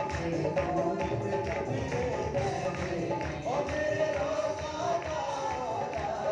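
A man singing a Punjabi worship song into a microphone, with musical accompaniment and a steady, even percussion beat.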